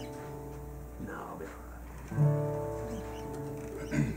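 Acoustic guitar chord ringing and fading, then a single chord strummed about two seconds in that rings out.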